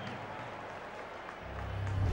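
Stadium crowd noise as a steady, even hubbub from the broadcast's field audio. Near the end a low rumbling whoosh swells in, the sound of the TV network's logo transition.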